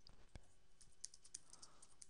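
Faint, irregular keystrokes on a computer keyboard as a search query is typed.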